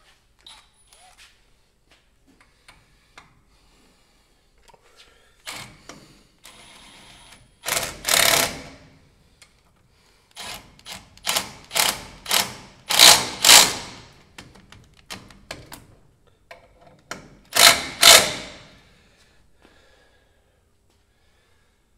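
Cordless power driver run in short bursts to drive in the caliper bolts of a front disc brake: a long burst about eight seconds in, a quick run of several bursts, and two more near the end, with light clicks of hand work in the quiet stretch before.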